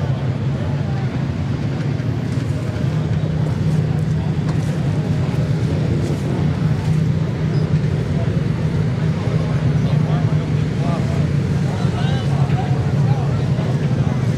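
A steady engine drone from a running vehicle, unchanging in pitch, with indistinct voices in the background.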